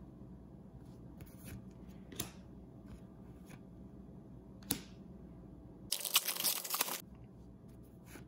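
Trading cards being flipped through by hand: two soft clicks of card edges, then about a second of louder rustling as cards slide against each other about six seconds in.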